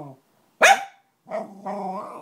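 Small poodle giving one sharp bark about half a second in, then a longer vocal sound held at a steady pitch.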